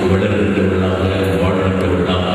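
A priest's voice chanting a liturgical prayer of the Mass over the altar microphone, on long, steadily held notes.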